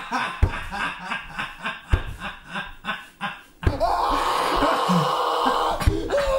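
Laughter in quick repeated bursts. After a sudden cut about two-thirds of the way in, a man's continuous crying wail takes over, louder and unbroken.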